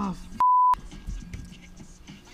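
A short censor bleep, one steady pure tone near 1 kHz lasting about a third of a second, about half a second in; all other sound is cut out while it plays.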